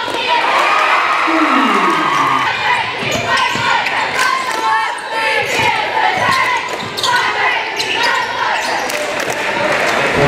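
Basketball game sound in a large gym: the ball bouncing on the court amid the steady chatter and shouts of a crowd. About a second in, one voice calls out in a long falling tone.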